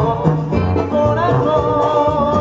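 Live Mexican banda music: a male singer over a brass band, with a tuba bass line pulsing underneath.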